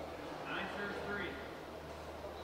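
Indistinct voices, with a short pitched call about half a second in, over a steady low hum.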